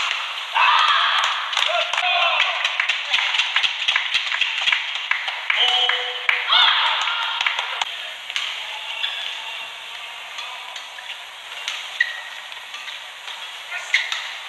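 Badminton rally: repeated sharp pops of rackets striking a shuttlecock, with short squeaks of court shoes on the mat.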